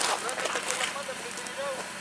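Rustling and footsteps of someone moving through grass, with several faint, short calls in the distance.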